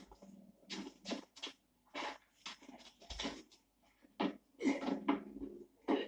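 Short, irregular grunts, huffs and straining breaths from two men as one climbs onto the other's back and up a post, heard from an old film soundtrack through a TV speaker. The bursts come loudest around two thirds of the way in.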